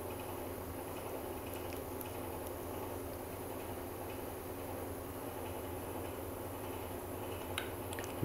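Rotary tattoo machine running steadily at low voltage (3 V shown on the power supply), a steady even hum.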